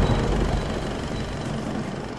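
Low, dark rumbling drone of horror-trailer sound design under a title card, slowly fading and dropping out near the end.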